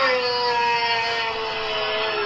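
A man's long yell, one held note that slowly falls in pitch.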